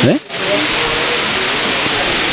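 Steady, loud background hiss with no clear pitch, and a short rising vocal sound at the very start.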